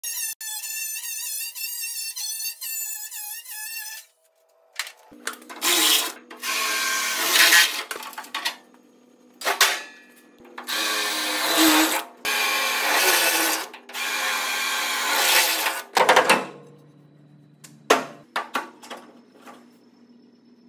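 A few seconds of music open, then an angle grinder with a cut-off wheel cutting the sheet-steel bed side of a Chevy C10 in repeated bursts of one to two seconds, with the motor's steady hum between cuts. A few short clicks follow near the end.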